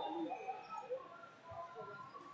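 Indistinct chatter of many distant voices, echoing in a large sports hall.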